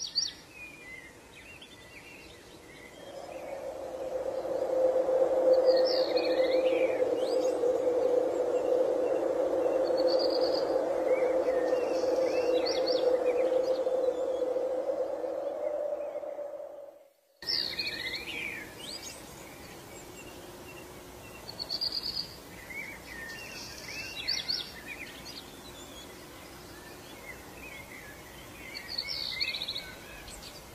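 Small birds chirping and singing in short scattered phrases. A steady drone swells in a few seconds in, holds as the loudest sound, and cuts off suddenly a little past halfway, leaving the birdsong alone.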